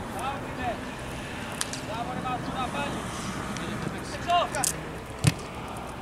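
Spectators chatting in short phrases around a football pitch over an outdoor background, with one loud, sharp knock a little after five seconds in.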